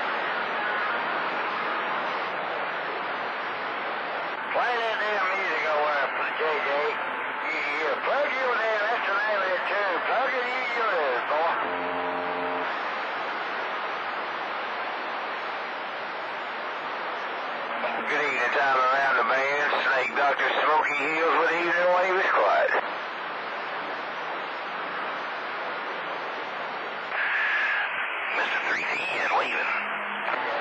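CB radio receiving distant skip on channel 28: garbled, wavering voices come and go through a steady hiss of static. A short buzzing tone sounds a little before halfway.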